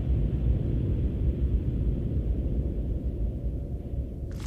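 A deep, steady rumbling drone with all its weight in the low end: a radio-drama sound-effect bed, easing off slightly toward the end.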